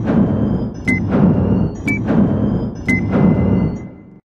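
Digital countdown-clock sound effect: a short high electronic beep with a deep, ringing thud, once a second, four times. It cuts off abruptly at the end.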